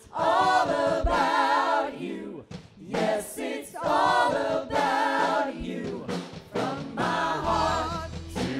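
A woman singing a worship song in phrases, her voice wavering with vibrato, with other voices and a worship band behind her.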